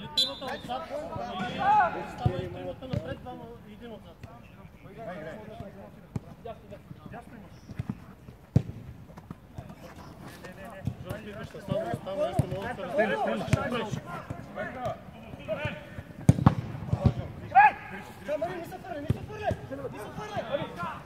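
Mini-football players shouting to one another, with several sharp thuds of the ball being kicked, the clearest a little past the middle and again near the end.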